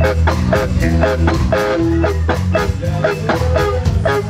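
Ska band playing: electric guitar strummed in short, regular strokes about four a second, over drum kit and a steady low bass line.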